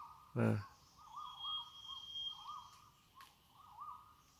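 A bird calling in a steady string of short, low, rising-and-falling whistled notes. About a second in, a thin high whistle is held for about a second and a half.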